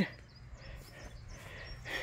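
Quiet outdoor background with a few faint, short, high chirps from birds.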